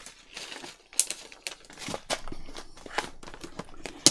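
Plastic packaging being handled: a crinkly plastic packet rustling, with sharp clicks and taps of plastic against a clear plastic box, the loudest click about a second in.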